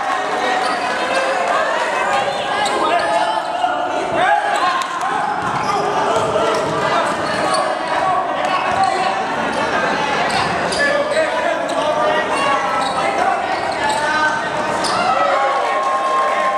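Live game sound from a youth basketball game in a large indoor hall: a basketball bouncing on the court, with players and spectators shouting and talking throughout.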